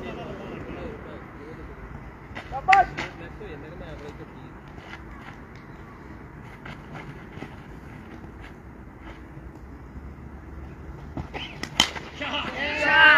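Open-air ambience at an amateur cricket match, with faint distant voices. There is one sharp loud knock about three seconds in and a couple of sharp clicks near the end.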